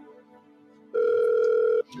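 One electronic telephone ring: a loud steady tone lasting just under a second, starting about a second in and cutting off sharply. Soft background music fades out just before it.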